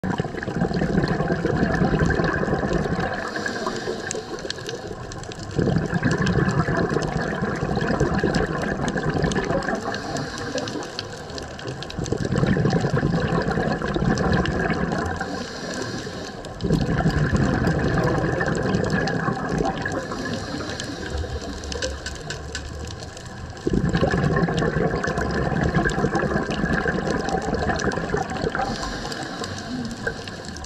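Scuba diver breathing through a regulator, heard underwater: a brief hiss of each inhalation, then a rush of exhaled bubbles that starts suddenly and trails off. Five breaths, one about every six seconds.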